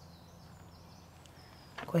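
Quiet outdoor background hiss with a few faint high bird chirps, and a woman starts speaking right at the end.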